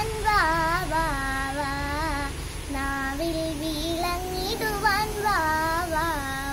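A young girl singing a Malayalam devotional song solo, holding long notes with ornamental pitch bends in several phrases, with brief breaths between them.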